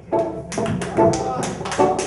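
Live reggae band playing: keyboard chords over crisp, evenly spaced strokes about four a second. The music cuts back in right at the start after a brief dropout.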